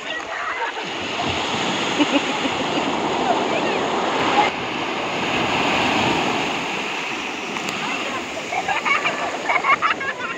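Sea surf washing in over shallow water around people's legs, a steady loud rush of breaking waves and swash. Near the end, high-pitched voices call out over the surf.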